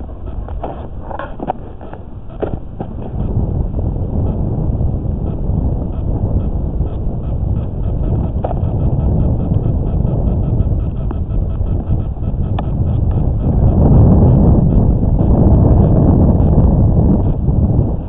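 Wind buffeting the microphone with an uneven low rumble that grows louder a few seconds in and is strongest near the end.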